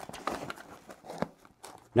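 Faint rustling and a few soft clicks of a fabric softbox being handled as it is fitted onto the frame of an LED mat light, falling almost silent near the end.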